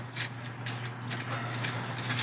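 Faint clicks and light rattles of a metal sink drain strainer's parts being handled and turned in the hands, over a steady low hum.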